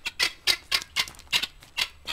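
Helmeted guineafowl calling a rapid series of short, harsh clicking notes, about three or four a second.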